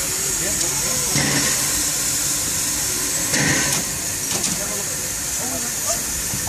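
Steam locomotive standing at the platform, letting off a steady hiss of steam.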